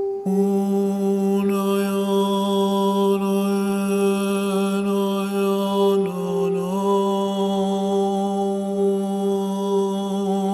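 Meditation music: a steady ringing drone with a low, long-held chanted tone that comes in just after the start and dips briefly in pitch about six seconds in.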